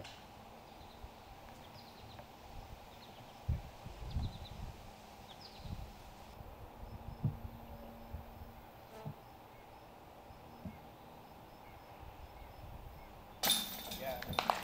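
Quiet outdoor woodland ambience with faint bird chirps and a few soft low thuds in the first half. Near the end a sudden burst of noise sets in, spectators starting to clap.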